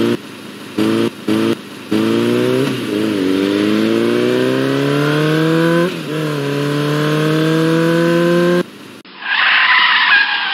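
Recorded car engine sound effect revving: three short blips, then a long climb in pitch that drops and climbs again once, like a gear change, about six seconds in, before cutting off suddenly. A brief, noisier burst of sound follows near the end.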